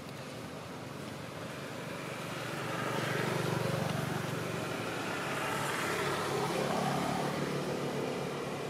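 A motor vehicle driving past, its engine hum and road noise swelling about two seconds in and easing off near the end.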